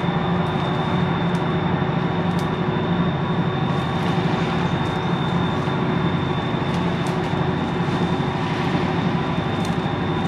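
Steady low drone of the American Duchess paddle-wheel riverboat's engines carrying across the river, an even hum with no change in pitch.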